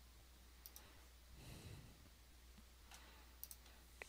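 Near silence: faint room tone with a few soft computer mouse clicks, one early and a quick pair near the end, and a soft breath in between.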